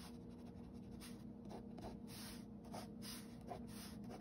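Pen scratching across sketchbook paper in quick, repeated short strokes as thick lines are darkened in. A faint steady hum lies underneath.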